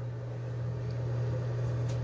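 A steady low hum with faint hiss underneath, unchanging through the pause in speech.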